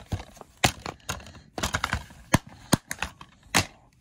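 Plastic VHS and DVD cases clicking and clacking as they are handled and set down: a string of irregular sharp clicks, the loudest about two and a half and three and a half seconds in.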